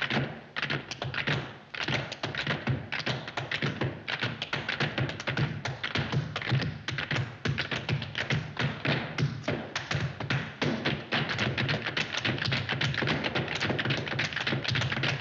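Tap shoes striking a hard floor in fast, continuous runs of sharp taps, growing denser in the second half.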